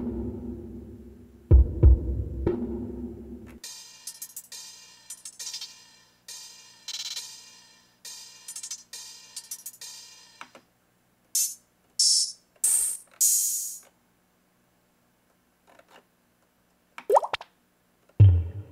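Drum samples from an R&B drum kit previewed one after another on an MPC: a drum loop with heavy kick hits for the first few seconds, then a run of ringing cymbal-like hits, then a few short hi-hat hits with gaps between them, and a single percussion hit near the end.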